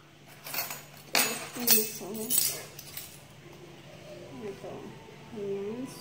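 A woman coughing several times in quick succession, then a few low murmured words near the end.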